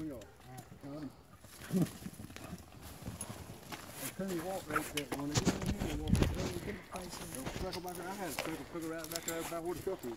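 Coonhounds whining and yelping in wavering, high-pitched calls as they are cast out on the hunt, with rustling and heavy thumps of brush and handling around the middle.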